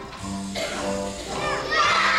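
Kindergarten choir singing with accompaniment, children's voices on held notes; near the end the song closes and a louder burst of voices with gliding pitches comes in.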